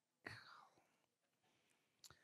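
Near silence, with one brief faint breathy sound, like a breath or whisper, in the first half second.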